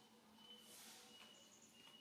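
Near silence: faint outdoor ambience with a few faint, short, high chirps, about one every half second.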